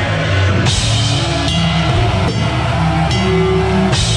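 Heavy metal band playing live. A guitar-led passage gives way, about half a second in, to the full band: drum kit with cymbal crashes, heavy guitars and bass, with a cymbal crash recurring every second or so.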